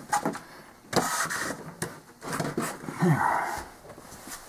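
Handling noise from a fiberglass model-airplane fuselage being lifted and turned: rustling and scraping with a few sharp knocks.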